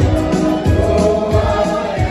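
Church choir of mixed men's and women's voices singing a hymn through microphones, with electronic keyboard accompaniment that keeps a steady low beat of about three pulses a second.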